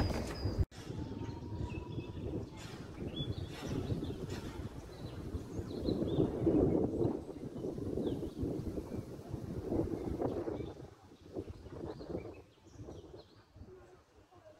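Outdoor ambience: a low, uneven background rumble with occasional faint bird chirps above it. The rumble dies down near the end.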